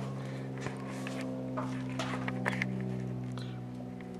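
A steady low hum of several held tones, with a few faint clicks and taps from handling or steps.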